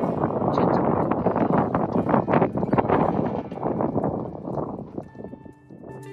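Strong gusty wind buffeting the microphone, with laundry flapping on a clothesline. About five seconds in it fades out and soft music begins.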